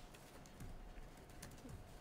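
A nearly quiet room with a few faint, scattered clicks of typing on a laptop keyboard over a faint steady hum.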